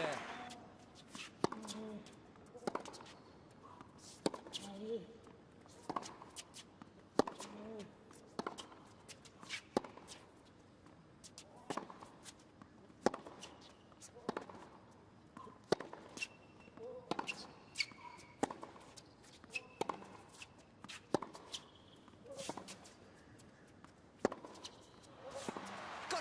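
A tennis ball hit back and forth in a long rally on a hard court: sharp racket strikes and ball bounces, about one every second or so, with a few short high squeaks.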